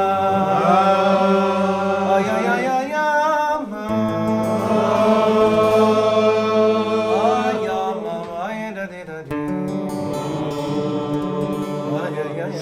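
Several voices singing a wordless Chassidic niggun in long held notes over an acoustic guitar, the chord changing about three seconds in and again near the end.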